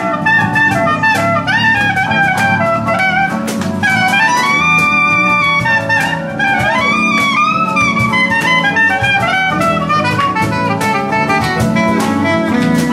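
Soprano saxophone playing a solo melody with slides and bends, over a live acoustic band of guitars, bass and a steady percussion beat.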